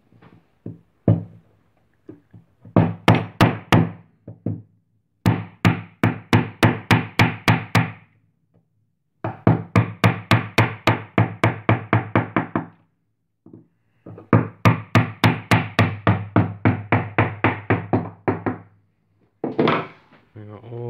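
A small hammer tapping a wood chisel to carve out the notches between the pin holes of a new wooden piano bridge. The taps come in quick runs of about five a second, four runs with short pauses between.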